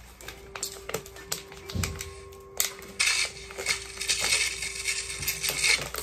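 A run of light clicks and clatter over a single held background music note.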